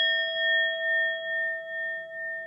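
Notification-bell 'ding' sound effect of a subscribe animation: one struck bell tone ringing on, pulsing about twice a second as it slowly fades.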